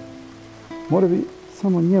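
A man's voice reading aloud: a short pause, then two brief phrases, one about a second in and one near the end, over quiet background music of held notes.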